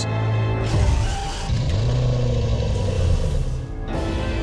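Car engine revving once, its pitch rising and then falling, over background music.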